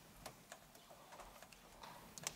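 Near silence: quiet room tone with a few faint, irregular clicks.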